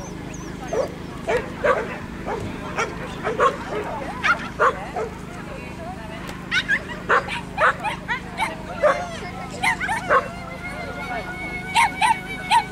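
A small dog barking in short, sharp yaps, roughly two a second, with a brief pause about five seconds in.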